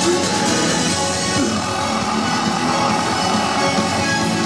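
Folk metal band playing live through a PA, loud and unbroken: electric guitars over a dense wall of sound, heard from within the crowd.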